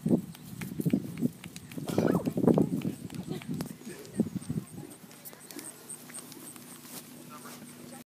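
Indistinct voices of people talking near the microphone in irregular bursts, loudest a couple of seconds in, with scattered knocks and rustles from the camera being handled.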